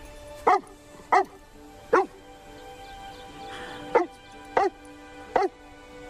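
A dog barking six times, short sharp barks in two groups of three, over soft sustained film-score music.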